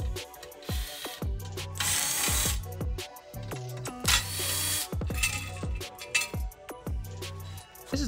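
Cordless impact driver spinning the bolts of a wheel's beadlock ring in short bursts, the two longest about two and four seconds in. Background music plays under it.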